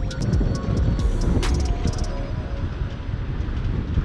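Wind rumbling on the microphone with the surf, under faint background music that carries a few sharp percussive clicks in the first half.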